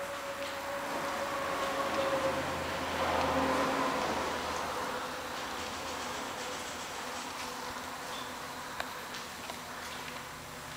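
A steady mechanical hum with a held whine in it, swelling for a few seconds about a second in and then settling back.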